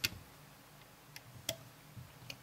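A few sharp clicks, one at the start and one about a second and a half in, with fainter ones between: a metal loom hook and stretched rubber bands clicking against the plastic pins of a Rainbow Loom as the bands are hooked over.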